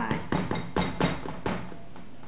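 A plastic cinnamon shaker bottle shaken over a bowl: four sharp knocks, about two a second, stopping about a second and a half in.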